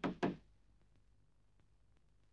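A fist knocking on the door of a railway goods wagon: the last two knocks of a quick run, ending about a third of a second in.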